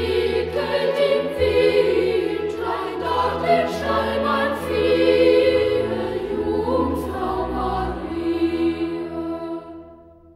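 Boys' choir singing a German Christmas carol with a small instrumental ensemble holding low notes beneath. The sung phrase fades away near the end.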